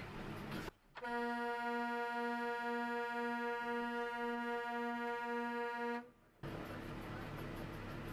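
A vehicle horn held on one steady pitch for about five seconds, wavering slightly about twice a second, starting and stopping abruptly. Steady road rumble comes before and after it.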